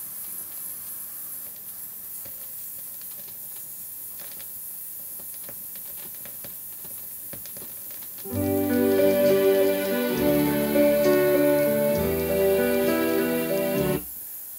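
Uncleaned vinyl record playing through a hi-fi: for about eight seconds there is only surface crackle and scattered ticks, then music starts, with the crackle still over it. The crackling comes from dirt in the grooves of a record that has not yet been cleaned.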